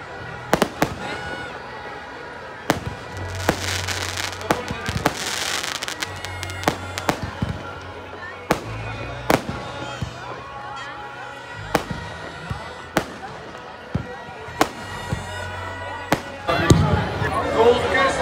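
Aerial fireworks going off overhead: sharp single bangs at irregular intervals, roughly one every second, with a dense crackling hiss for a few seconds early on. A low steady hum runs underneath, and crowd voices swell near the end.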